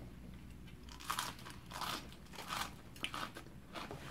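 A person chewing a crunchy mouthful of fresh leafy greens with fried fish, the crunches coming in short bursts about every two-thirds of a second.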